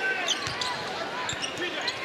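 Arena crowd noise during a basketball game, with a basketball being dribbled on the hardwood court.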